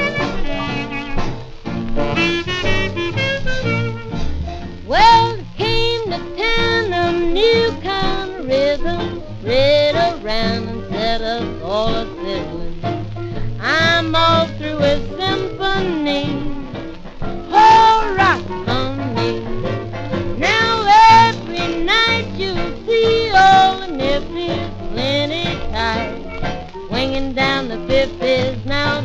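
1930s big band swing record playing an instrumental stretch with no vocals: the band carries the tune over a steady dance beat, with the dull top end of an old recording.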